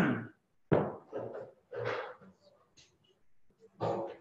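A person's voice: the tail of a laugh, then several short vocal bursts in quick succession and one more near the end.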